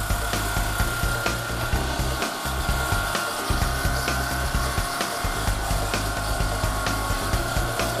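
Saw blade of a SawJet stone-cutting machine sawing a granite vanity top underwater, a steady cutting noise. Background music with a bass line runs underneath.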